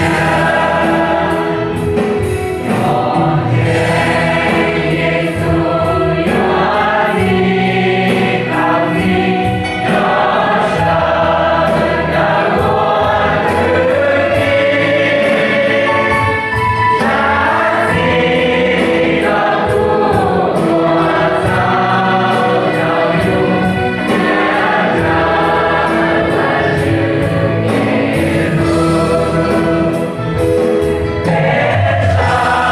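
A mixed choir of men and women singing a hymn together in sustained, continuous phrases.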